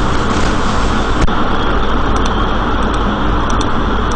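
Steady, loud background noise with no clear pitch, and a single sharp click about a second in.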